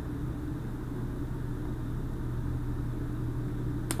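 Steady low hum and rumble of background room noise, with a single sharp click near the end.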